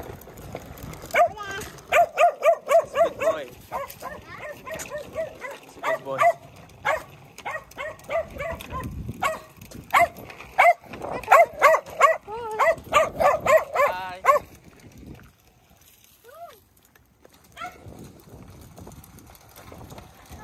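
A dog barking in quick runs of several barks at a time, loud and repeated, stopping after about fifteen seconds.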